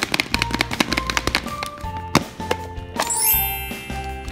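Background music: an upbeat tune with a quick percussive beat, one sharp click about halfway through, and a rising sweep of chime-like tones near the end.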